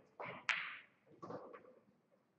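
Three short, sharp clacks or knocks with brief decays, the loudest and sharpest about half a second in.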